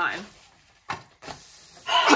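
Pancake frying in a hot pan, a steady sizzle, with a single sharp click about a second in.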